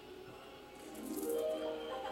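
Music from a television playing in the room, growing louder about a second in, with a shaking, rattle-like sound in it.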